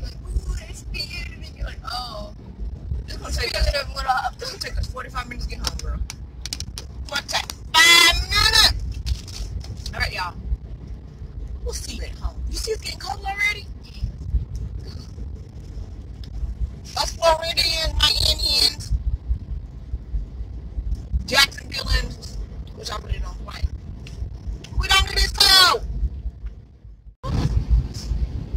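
A woman's voice in scattered bursts over the steady low rumble of a car driving, heard from inside the cabin. The sound drops out briefly near the end.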